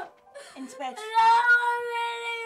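A young girl's long wailing cry, starting about a second in and held at nearly one pitch before it falls away.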